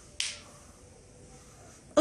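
A single short, sharp click near the start, over quiet room tone.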